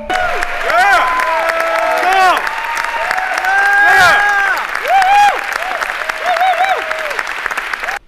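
Audience applauding, with many voices whooping and cheering over the clapping in short rising-and-falling calls.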